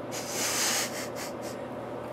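A person's breath: one breathy exhale lasting under a second, followed by a couple of faint clicks.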